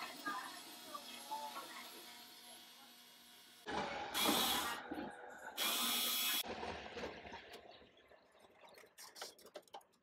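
Cordless electric screwdriver running in two short bursts, about four and about five and a half seconds in, backing out the screws that hold a metal post box to the wall. Small clicks and knocks of handling follow near the end.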